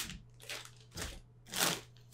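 A clear plastic bag of drone propellers crinkling as it is handled, in four short rustles about half a second apart.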